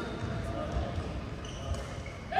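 Echoing indoor sports-hall background: distant voices and low thuds on the court floor, with one sharp tap near the end.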